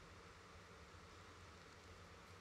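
Near silence: faint steady hiss and low hum from the room and microphone.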